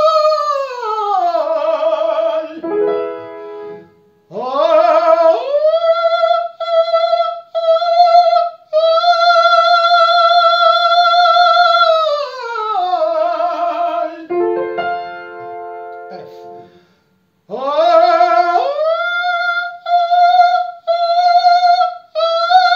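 A tenor singing an exercise on extreme high notes above high C, stepping up by semitones from D sharp to E to F: each high note is held, glides down about an octave, and then slides back up onto the top note, which is struck in short repeated attacks and held long. Two piano chords about 3 and 15 seconds in give the next pitch. The exercise carries the falsetto sensation over into full chest voice.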